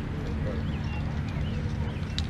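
Outdoor ambience on an open range: a steady low rumble of wind on the microphone, with a few faint short high chirps in the middle and a faint steady hum.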